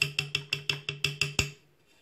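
A rapid, evenly spaced run of wood-block-like taps, about six a second, over a low held tone, stopping abruptly about a second and a half in.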